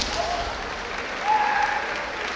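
Spectators clapping in a large hall, with brief drawn-out shouts, the kiai of kendo fencers, rising over the clapping near the start and about a second in.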